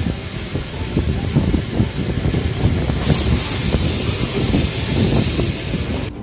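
A diesel city bus running at a stop, a steady low rumble with irregular low knocks. About halfway through, a steady hiss cuts in suddenly and lasts to the end.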